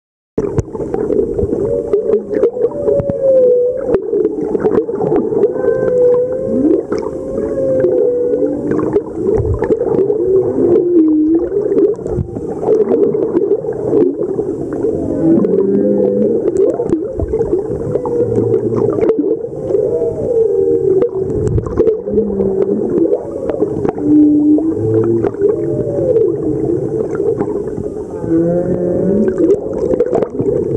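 Humpback whale song heard underwater: a continuous run of wavering moans and whoops that slide up and down in pitch, with scattered clicks among them. It begins about half a second in.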